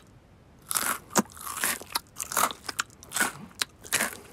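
Cartoon foley of a cat crunching and chewing food: about four short crunching bites with a few sharp clicks between them.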